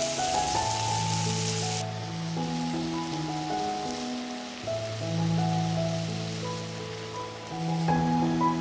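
Slow background music of held notes, over the crackling sizzle of chicken and peppers frying in oil in a pan. The sizzle cuts off abruptly about two seconds in, leaving the music over a faint hiss, and briefly returns near the end.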